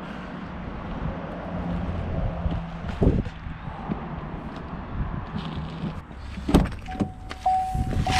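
Wind buffeting the microphone, with a thump about three seconds in. Near the end a car door latch clicks open and the car's steady door-open warning chime starts.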